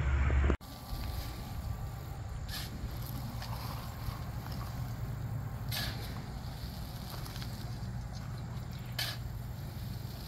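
Shovel scooping wood-chip mulch and tossing it into a wheelbarrow: a brief scraping rustle about every three seconds, over a steady low rumble.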